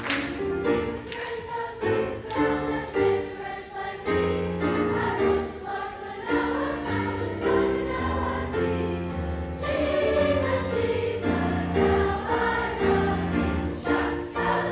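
A middle school choir of boys and girls singing a gospel song in full chords, with piano accompaniment.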